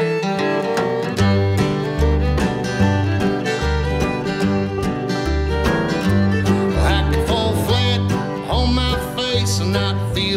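Instrumental intro of a country-bluegrass song by a string band: acoustic guitar and mandolin picking over an upright bass that alternates between two notes on an even beat. A fiddle line with vibrato comes to the fore about two-thirds of the way in.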